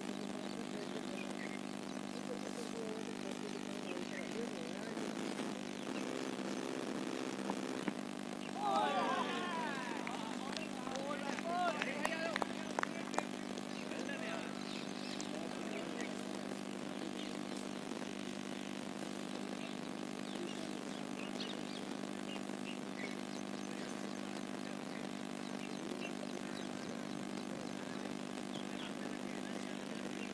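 Cricket players shouting on the field about nine seconds in, over a steady mechanical drone, with a few sharp clicks a few seconds later.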